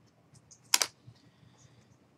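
A few faint clicks, then one sharp click about three-quarters of a second in, over quiet room tone: keystrokes on a computer keyboard.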